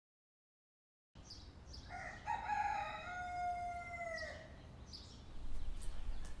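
A rooster crowing once, a long held call that drops in pitch as it ends, over faint outdoor background. The sound comes in after about a second of dead silence.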